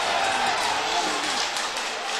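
Football stadium crowd cheering a goal: a dense, steady wash of many voices with a few faint shouts in it, easing slightly near the end.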